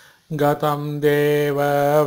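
A man chanting Sanskrit verse in a steady, even recitation tone, holding long notes near one pitch. He comes in after a brief pause about a third of a second in.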